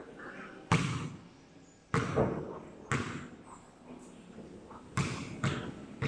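Basketball bouncing on a concrete court: five hard bounces at uneven gaps, the loudest and first just under a second in as the ball comes down from the hoop, then two more, then two closer together near the end as it is dribbled.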